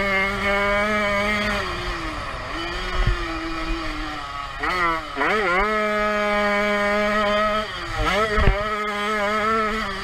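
Jawa 50 Pionýr's 50cc single-cylinder two-stroke engine racing at high revs. The pitch sags as the throttle is eased, swings quickly up and down about halfway through, and climbs back to hold high again. A couple of short thumps come from the bike over the track.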